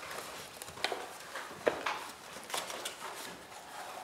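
A sheet of paper being folded and creased by hand, giving a series of short, irregular crinkles and crackles as the pleats are pushed in.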